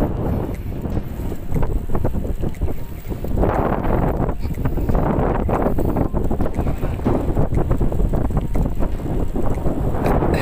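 Wind buffeting the microphone of a camera moving along at riding speed: a steady low rumble with crackling gusts that grows louder from about three and a half seconds in.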